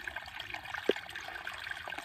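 Shallow runoff creek trickling steadily over rocks, with a single short click about a second in.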